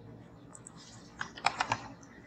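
About half a dozen quick keystrokes on a computer keyboard, bunched together a little over a second in, with quiet room tone around them.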